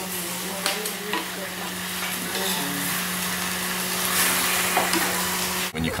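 Leafy greens sizzling as they are stir-fried in a wok over a wood fire, with the stirring utensil scraping and clicking against the pan. A steady low hum runs underneath, and the sizzling cuts off suddenly near the end.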